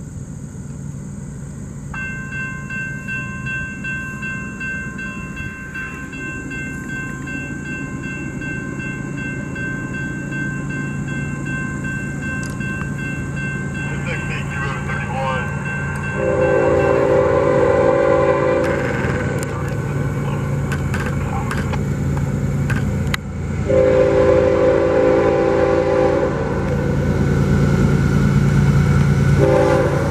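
A grade-crossing warning bell starts ringing about two seconds in as the crossing signals activate, while the rumble of an approaching CSX diesel freight train grows steadily louder. The locomotive's air horn sounds two long blasts, about 16 and 24 seconds in, and a third begins near the end.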